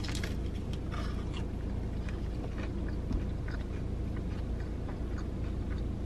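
Crunching bites and chewing of a crispy, powder-coated fried chicken tender, the crunches strongest in the first second and a half, then quieter chewing, over a steady low hum in a car cabin.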